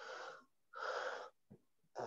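Two faint, airy breaths close to a microphone. The first ends about half a second in, and the second lasts about half a second, around one second in.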